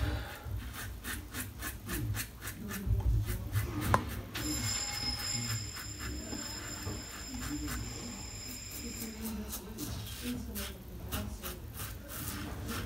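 Double-edge safety razor scraping through stubble under shaving lather in quick, short strokes, heaviest in the first few seconds and again near the end.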